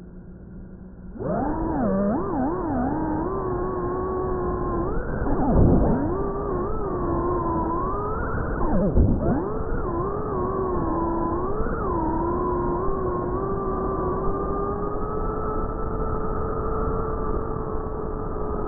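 An FPV quadcopter's brushless motors, recorded by the camera on board. They idle quietly at first, then whine loudly as the drone lifts off about a second in. The whine glides up and down with the throttle and twice drops almost to nothing before shooting back up, the throttle cuts of flips and rolls, then holds a steadier high whine toward the end.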